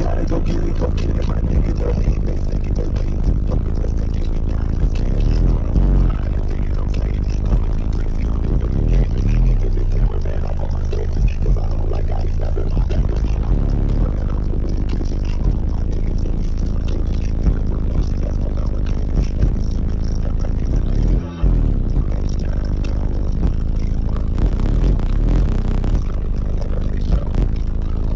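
Bass-heavy music played at extreme volume through a 100,000-watt car audio system's subwoofers, heard from inside the cabin, with the deep bass dominating. It cuts out briefly about three quarters of the way through.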